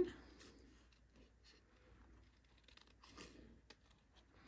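Small paper snips cutting around the outline of a stamped cardstock image, heard as a few faint, soft snips and clicks.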